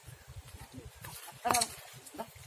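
A short, loud vocal call about one and a half seconds in, over a low, fluttering rumble.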